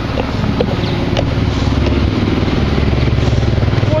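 An engine running steadily at constant speed, a low even hum.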